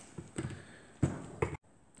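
A few light clicks and knocks as a die grinder is handled against an aluminium crankcase. The grinder itself is not running.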